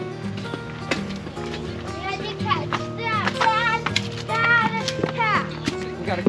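Background music with sustained notes, and a young child's high-pitched voice sounding out twice, about halfway through and again near the end.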